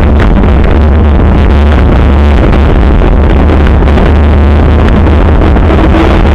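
Loud, steady wind rumble on the microphone of a bicycle-mounted camera while riding, with road and tyre noise.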